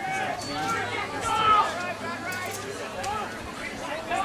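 Indistinct talking of spectators near the camera: several voices chatting with no clear words.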